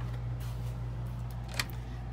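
A steady low hum with a couple of faint clicks, one about half a second in and one near the end.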